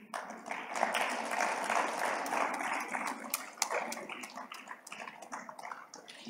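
Audience applauding, loudest in the first few seconds and then tapering off.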